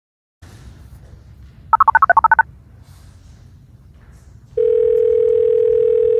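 Touch-tone phone dialing: a quick run of keypad beeps, then after a pause a single steady ringing tone lasting about two seconds as the call goes through, over a low background hum.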